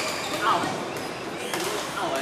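Badminton rackets striking a shuttlecock during a rally: two sharp hits, one at the start and one about a second and a half later, over a background of voices in the hall.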